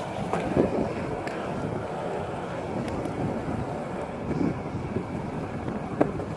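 Steady rolling noise of a penny board's small plastic wheels running over asphalt, with wind on the microphone.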